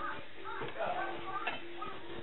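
Puff puff dough balls frying in hot oil in an aluminium saucepan, with a few light clicks of a fork against the pan as they are turned. Faint voices in the background.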